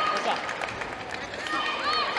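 Indistinct voices in a gymnasium between badminton rallies, with the players' footsteps and shoes squeaking on the court floor.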